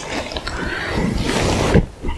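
Loud rustling and rubbing handling noise right at a clip-on microphone as the plastic transmitter case is turned and lifted against the shirt. It builds up and cuts off suddenly near the end.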